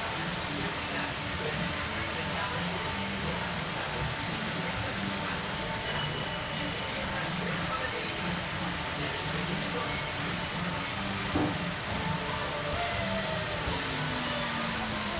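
Steady splashing of fountain water spilling over the rim of the spinning Dumbo ride's base into its pool, mixed with crowd voices and faint background music. There is a brief knock about eleven seconds in.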